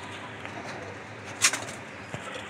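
Young pigeons cooing softly over a steady background hum. One short, sharp sound comes about one and a half seconds in.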